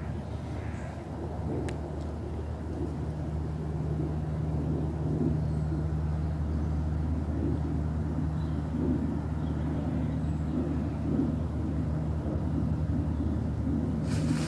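A steady low hum of an engine running in the distance, unchanging in pitch, with faint outdoor background noise.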